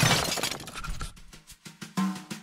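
A crash of shattering glass dies away in crackly, tinkling pieces, fading out over about a second. A new burst of music starts right at the end.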